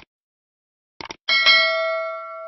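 Subscribe-animation sound effects: a short click at the start, a quick double click about a second in, then a bright notification-bell ding that rings on and fades slowly.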